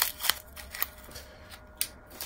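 Gift wrapper crinkling and rustling in gloved hands as a small plastic pot is unwrapped, in quick crackly clicks that die down, then one sharp click near the end.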